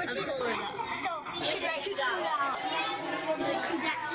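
Indistinct chatter of several children talking at once in a classroom, with no single clear voice.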